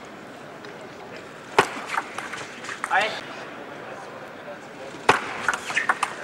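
Celluloid table tennis ball being struck and bouncing during a point: a single sharp click about a second and a half in, then another near the end followed by a few quicker, softer ones, over low arena background noise.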